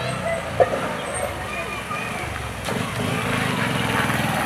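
Small commuter motorcycle's engine running as the bike rides up and pulls to a stop, getting louder about two-thirds of the way through.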